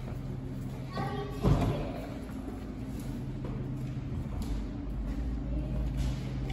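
Indoor room tone with a steady low hum, a brief voice about a second in, and a single dull thump just after it.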